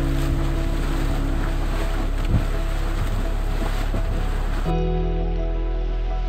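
Steam venting from a fumarole in a mud-pot area, a steady rushing hiss that cuts off about five seconds in, under background music with sustained tones.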